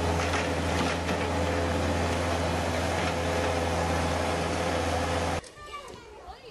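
Steady machine noise with a strong low hum, like an engine running, that cuts off suddenly about five seconds in. Faint voices follow.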